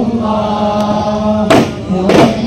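A group of men chanting in unison, holding a long note, with one sharp frame-drum (duff) strike about one and a half seconds in.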